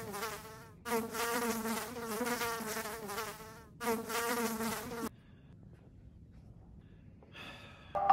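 Buzzing of a flying insect, wavering in pitch, in three stretches with short breaks about a second and about four seconds in; it stops about five seconds in, leaving only faint room noise.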